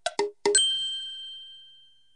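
A short jingle of quick tapped notes that ends, about half a second in, on one bell-like ding that rings out and fades away over about a second and a half.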